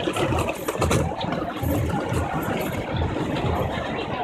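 Busy city street noise dominated by a steady engine-like rumble with an even low pulsing.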